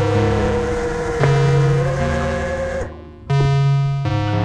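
Electronic pop music with sustained synth and bass notes stepping between pitches and no singing; it cuts out briefly about three seconds in, then comes back.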